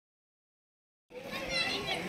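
Dead silence for about the first second, then people's voices, children among them, start talking and calling out.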